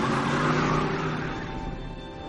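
A 1960s Ford Mustang fastback's engine revving as the car swings past through a turn. The sound swells and peaks just after the start, then fades away.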